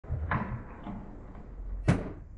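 Aggressive inline skates rolling on concrete with a low rumble and small knocks, then one sharp, loud clack of a skate striking the ground or an obstacle near the end.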